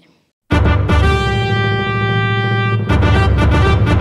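Live ensemble music starts about half a second in with a loud held chord. Near three seconds in a drum kit and fuller rhythmic accompaniment join.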